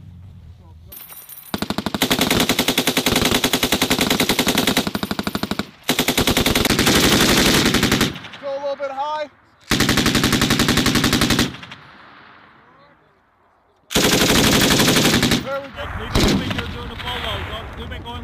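Belt-fed machine guns, an M249 among them, firing in fully automatic mode. There are four long bursts of about one and a half to four seconds each, the shots coming in a fast, even rattle, with short pauses between.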